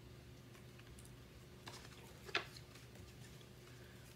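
Faint handling clicks from a picture book's paper pages as it is shown and turned, with one sharper tap a little past halfway, over a low steady room hum.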